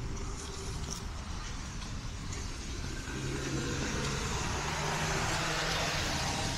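A car passing on the street: engine and tyre noise building from about halfway through, loudest near the end.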